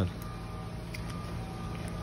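Steady low mechanical hum with faint constant tones, from a stopped subway train idling on the track.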